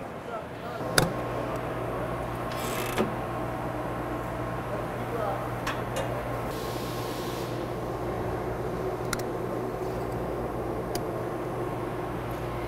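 Steady low electrical and machinery hum of a factory floor, with scattered light clicks and two brief rustles from handling the open crane control box and clamping a current module onto the wiring.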